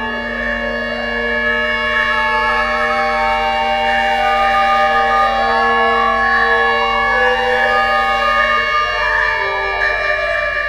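Erhu and a bamboo wind instrument playing long held, wavering notes in a contemporary chamber piece, over a steady low drone that drops out near the end.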